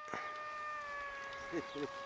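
Small electric RC plane motor and propeller running at low throttle, a steady buzzing whine whose pitch drops slightly about a second in.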